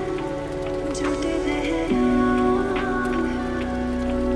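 Slowed lo-fi remix music: sustained keyboard-like chords over a low bass, with a pattering rain-like noise layered underneath. The chord changes about two seconds in.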